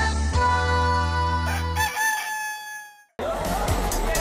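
TV intro jingle: music with a cartoon rooster crowing, ending in a held note that fades out about three seconds in. After a moment's silence, the live sound of the match footage cuts in with a busy background of noise.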